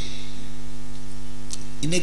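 Steady electrical mains hum from the microphone and amplifier chain: a low buzz with a ladder of even overtones, with one faint click about a second and a half in.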